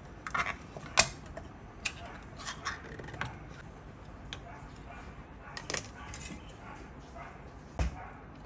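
Kitchen handling sounds of a tin can and a stainless-steel bowl on a wooden chopping board. A sharp metallic click about a second in as the can of straw mushrooms is opened, then scattered lighter knocks and clinks as the mushrooms go into the bowl.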